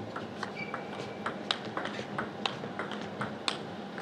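Table tennis rally: the plastic ball clicking sharply off rubber-faced bats and the table in a quick, irregular run of knocks, several a second.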